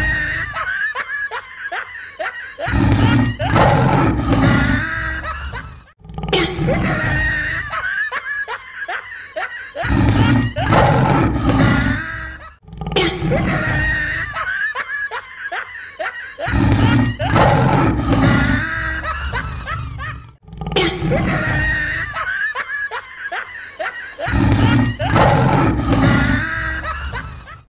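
Comedy sound effects laid over the clips, repeated four times: laughter, with a big-cat roar coming in under it a couple of seconds into each round. Each round lasts about six to seven seconds and ends in a brief cut.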